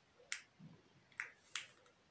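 Three short, sharp clicks over quiet room tone: one about a third of a second in and two close together in the second half.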